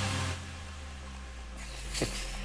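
Quiz countdown timer music playing as a low, steady drone, with a hiss fading out in the first half second.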